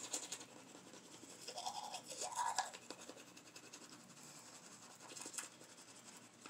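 Manual toothbrush scrubbing teeth with toothpaste in the mouth: quick, rasping back-and-forth bristle strokes, louder in spells at the start, around two seconds in and near the end.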